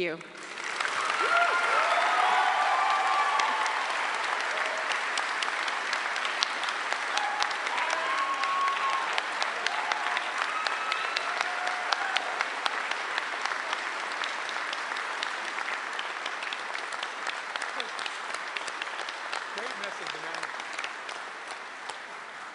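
A large audience applauding, swelling up at once and slowly dying away over about twenty seconds, with a few voices calling out over the clapping.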